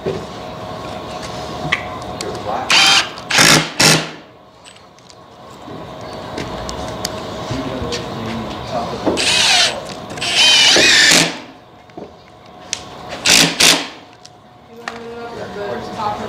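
Cordless drill driving screws into pine framing lumber in several short runs: two brief bursts about three seconds in, a longer run of about two seconds around ten seconds in, and two more short bursts near thirteen seconds.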